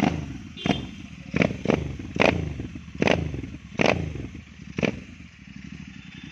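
Royal Enfield Interceptor 650's parallel-twin engine breathing through an aftermarket slip-on silencer, its throttle blipped about eight times. Each rev comes in sharply and falls back toward idle, and it idles near the end.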